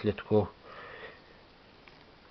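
A man's voice for a moment, then a short sniff through the nose about half a second in.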